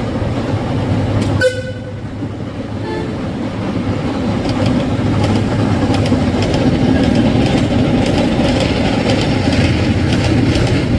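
A train horn gives a short toot about a second and a half in, with a fainter second toot near three seconds. Then a train's running rumble and wheel clatter on the rails grows louder, over a low steady engine hum.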